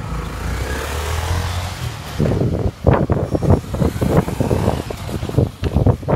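A motorcycle engine running close by, a steady low note for about two seconds, then pulling away. From about two seconds in, louder choppy, irregular sounds cover it.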